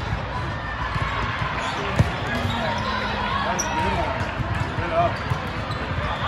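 Many voices chattering and echoing in a large sports hall, with a sharp volleyball hit about two seconds in among other ball thuds.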